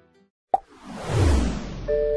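TV station's ad-break bumper sound effect: a sharp click, then a whoosh sweeping downward from high to low, followed near the end by bright mallet-chime tones of a jingle. It begins with the tail of guitar music fading out and a brief silence.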